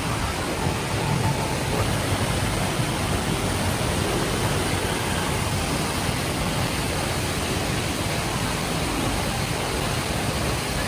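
Steady rushing of a large indoor waterfall, an even wash of falling water that fills the space under the glass dome.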